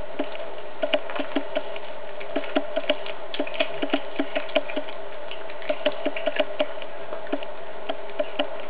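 A cat chewing a raw chick, the bones crunching in an irregular run of sharp cracks, a few a second, over a steady low hum.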